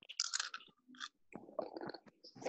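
Faint, irregular clicks and rustles close to the microphone.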